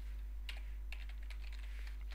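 Sharp clicks from a computer mouse and keyboard: two clearer clicks about half a second and one second in, then a few lighter taps, over a steady low electrical hum.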